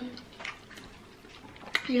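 Faint wet chewing and mouth sounds of people eating creamy pasta, with a few soft clicks and smacks, one around half a second in and one near the end.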